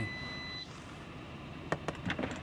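A steady high electronic beep that stops about half a second in, then two quick sharp taps near the end, over low background noise.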